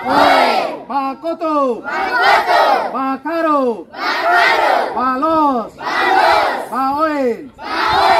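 A group of schoolchildren shouting together in a game chant, answering a single voice's short shouted calls in call-and-response, about four exchanges at roughly one a second.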